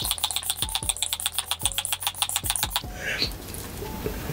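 A hand-pumped face spray bottle spritzed in a rapid run of quick pumps, stopping about three seconds in.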